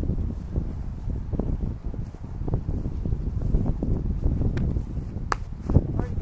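Wind buffeting the microphone: a steady, uneven low rumble, with a few faint sharp clicks.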